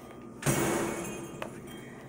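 Plastic packaging and fittings being handled: a sudden burst of crackling and clattering about half a second in, fading over about a second, with a small click after.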